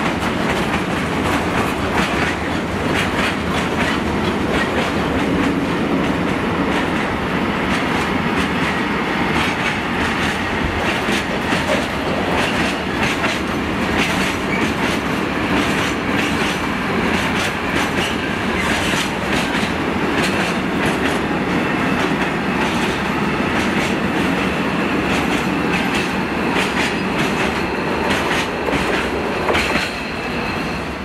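Loaded freight wagons rolling past on a train, a continuous rumble with wheels clattering steadily over the track.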